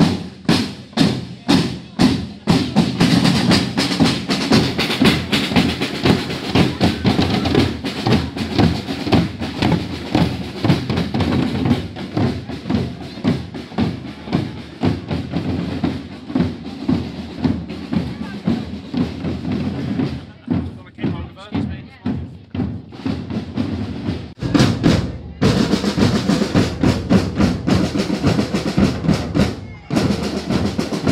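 A street drum band playing a fast, driving rhythm on its drums, with crowd voices around it. The drumming thins out about twenty seconds in, breaks off briefly a few seconds later, then starts up again at full strength.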